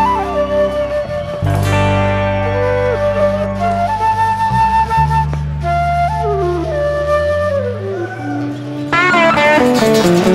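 Live band music: a flute plays a melody over long held low notes, then strummed guitars and the full band come back in about nine seconds in.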